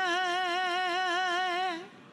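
A woman's voice holding one long sung note with an even vibrato, fading out near the end.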